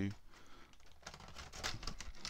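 Light irregular clicks and rustling of stiff plastic packaging being handled as a toy figure is freed from its moulded plastic base.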